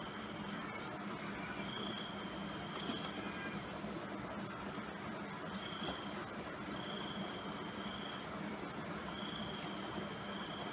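Quiet steady background hiss with a low hum, and a faint high-pitched tone that comes and goes several times.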